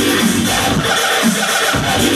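Loud electronic dance music from a live DJ set, played over a venue sound system with a beat under melodic lines.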